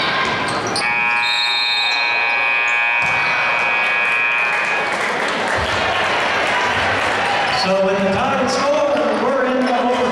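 Gymnasium scoreboard buzzer sounding one steady tone for about four seconds, starting about a second in, as the game clock runs out to end the period. Crowd noise throughout, with voices rising near the end.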